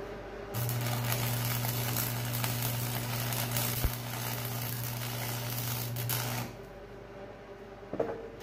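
Electric arc welding on the steel blade of a box blade: a steady crackling arc with an even hum under it, starting about half a second in and breaking off about six and a half seconds in.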